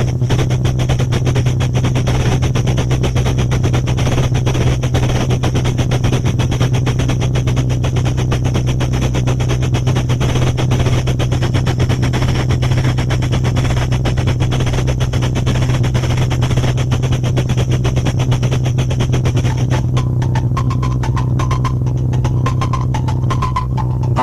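A 16mm film projector running: a rapid, even mechanical clatter over a steady low hum, unbroken throughout.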